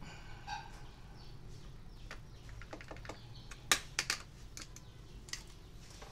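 Scattered sharp clicks and snaps as a CPU is set into a Gigabyte H61 motherboard's LGA1155 socket and the socket's metal load plate and retention lever are clamped shut. The loudest snaps come as a quick pair a little past the middle.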